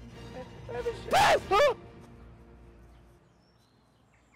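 Brief laughter with a couple of short voice sounds in the first two seconds, over faint background music that fades out about three seconds in.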